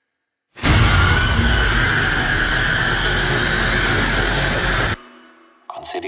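Horror-trailer sound-design hit: after a moment of silence, a sudden loud, dense wall of noise with deep bass and a wavering shrill tone on top, which cuts off abruptly after about four seconds.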